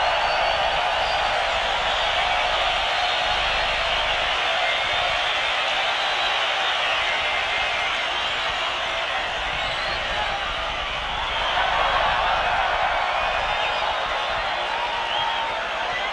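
Large stadium crowd cheering and screaming steadily in response to a band member's introduction, dipping slightly and swelling again near the end.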